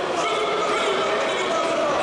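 Crowd of spectators shouting and calling out, many voices overlapping in a steady din.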